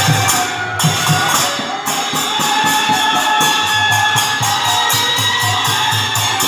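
Devotional kirtan music: metal hand cymbals (kartal) struck in a fast, even rhythm of about four or five strokes a second, over low drum beats and steady held tones.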